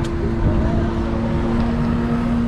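Motor vehicle engine and street traffic heard from inside a car: a steady low rumble with a constant low hum.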